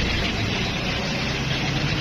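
Steady background drone of a running motor vehicle: an even, noisy hiss over a low hum, with no distinct clicks or knocks.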